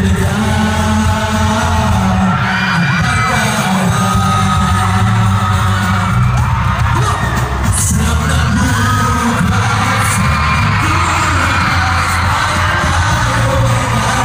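Male vocal group singing pop music live into microphones over loud accompaniment with heavy, steady bass, heard through a venue's PA system.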